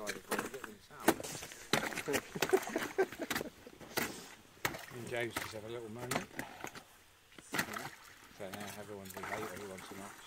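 Steel ice chisel striking and chipping lake ice again and again, a sharp strike every half-second or so, opening up the frozen-over hole at a beaver snare set.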